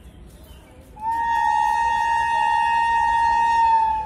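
Railway train horn sounding one long, steady blast of about three seconds, starting about a second in.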